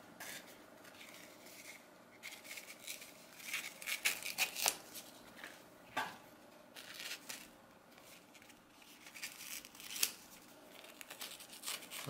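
Leatherman Raptor rescue shears cutting through a faux-leather sample: a run of irregular, fairly quiet snips, with a sharp click about six seconds in and another about ten seconds in.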